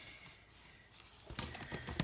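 Faint handling noises: a few light clicks and knocks in the second half as items are moved around in a fabric-lined basket.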